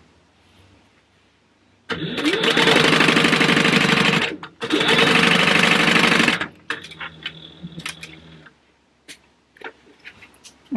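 Industrial sewing machine topstitching through fabric: two loud runs of about two seconds each, with a short pause between, starting about two seconds in. A quieter, slower run follows and stops a second or so before the end.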